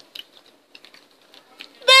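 Faint scattered clicks and ticks while jelly beans are chewed and handled. A girl's voice comes in near the end.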